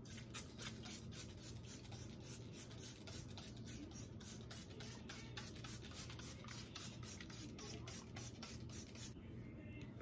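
Plastic trigger spray bottle spritzing water onto curly crochet hair over and over, about three short sprays a second, with hands rubbing through the curls; the spraying stops near the end.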